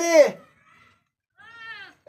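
A short animal call falling in pitch, about a second and a half in, after a brief spoken word at the start.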